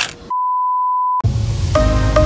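A single steady pure-tone beep, the test tone that goes with a TV colour-bar test card, used as an editing transition. It lasts about a second and cuts off abruptly, and background music starts straight after.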